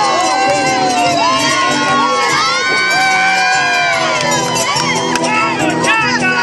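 A crowd cheering and shouting, many voices whooping at once, loud and unbroken, over marinera music playing underneath.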